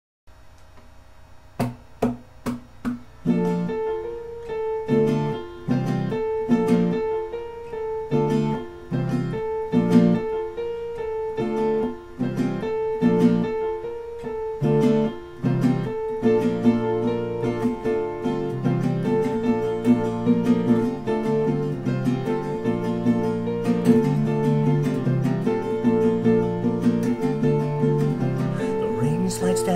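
Acoustic guitar strummed in a song's instrumental intro: a few separate chord strums at first, then steady rhythmic strumming from about three seconds in.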